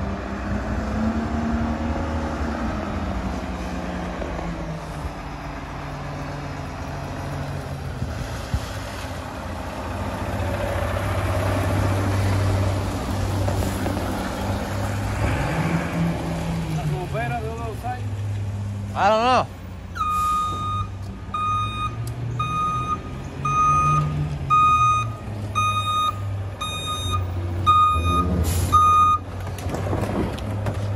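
Mack rear-loader garbage truck's diesel engine running, its pitch rising and falling as it drives in and manoeuvres, with a brief wavering squeal about two-thirds of the way through. Then its reverse alarm beeps steadily about once a second as it backs up, with a short hiss near the end.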